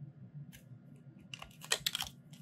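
Light clicks and ticks of a small plastic cosmetic package being handled, a few scattered at first, then a quick cluster about a second and a half in.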